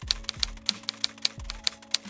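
Typewriter keys clacking, about ten uneven strokes in two seconds, over background music with a few deep bass drum hits.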